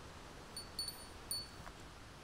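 A small bird chirping: four short, high-pitched notes in quick succession, over a faint steady hiss.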